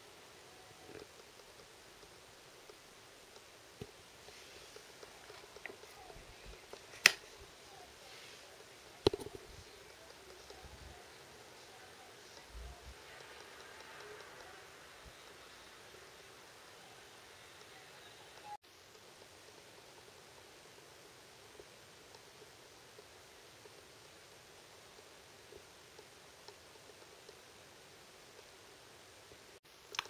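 Faint steady background hiss with a little soft rustling and two sharp clicks, about seven and nine seconds in.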